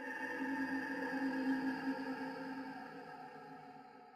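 A sustained eerie drone made of several steady tones held together like a chord. It swells during the first second and a half, then slowly fades away.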